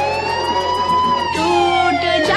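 Siren-like sound effect in a DJ remix break: one gliding tone that rises in pitch, peaks about a second in, then slowly falls, over a held low bass note with no drum beat.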